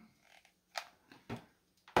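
A few faint ticks and one sharper knock near the end as a hot glue gun and felt pieces are handled on a wooden tabletop.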